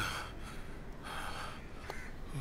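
A man gasping, a few short breathy gasps with a longer one about a second in.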